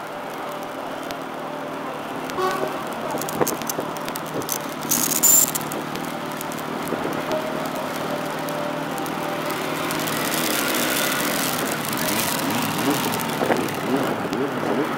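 Road traffic running steadily, growing a little louder later on as a vehicle passes, with a brief high-pitched squeal about five seconds in.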